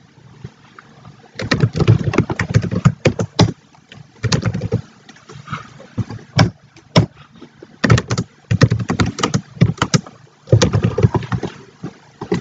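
Computer keyboard being typed on: quick bursts of key clicks with short pauses and a few single keystrokes between.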